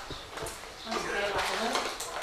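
A few light clinks and knocks of cups and glasses on a table, with low talk in the room.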